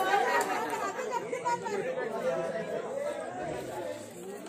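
Several people talking at once: overlapping, indistinct chatter of a small crowd.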